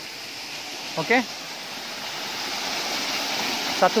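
Small forest waterfall pouring into a shallow pool: a steady rush of falling water that grows slightly louder over the last couple of seconds.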